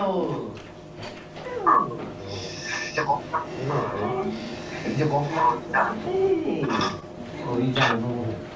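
Film dialogue in Igbo from an old videotaped film: a man greeting his wife warmly and her brief reply, with swooping, expressive intonation. A steady hum runs underneath.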